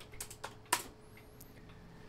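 A few computer keyboard keystrokes, the loudest about three-quarters of a second in, then stillness.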